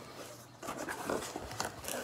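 Cardboard shipping box flaps being pulled open by hand: a run of scraping, rustling cardboard noises starting about half a second in.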